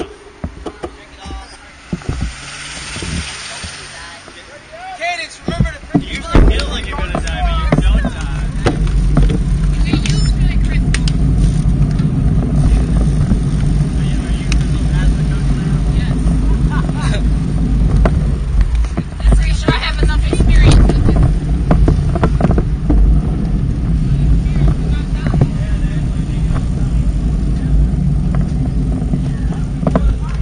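Wind buffeting the microphone of a bike-mounted action camera once the bicycle gets moving: a loud, steady low rumble that starts about six seconds in and carries on, with road noise underneath. Before it, voices and traffic while the riders wait at the light.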